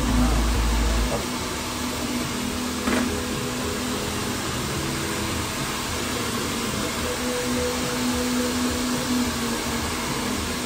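A small electric motor running steadily: a whirring hum over an even airy hiss. A low rumble stops about a second in, and there is a single click about three seconds in.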